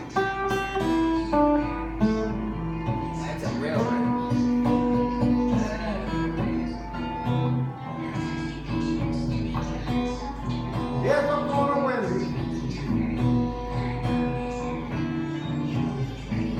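Acoustic guitar playing a blues with a picked bass line, continuously. A second melody line slides in pitch over it a few times.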